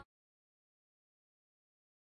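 Silence: the background song cuts off right at the start, and nothing follows.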